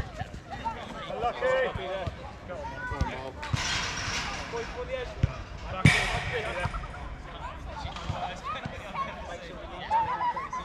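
Football being kicked and bouncing on artificial turf, with thuds at irregular intervals and players calling out across the pitch. A sharp, loud impact comes about six seconds in.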